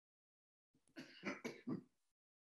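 A man coughing and clearing his throat in four short bursts, starting about a second in.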